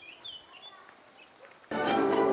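A few faint, short bird chirps. Near the end, orchestral string music comes in suddenly and loudly.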